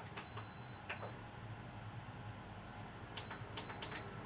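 Clicks with short high electronic beeps, one beep just after the start and a quick run of short ones near the end, over a faint low hum.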